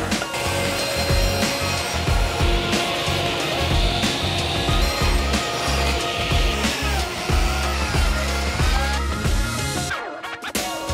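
Sliding table saw crosscutting oak boards to length, the blade running through the wood, under background music with a steady beat.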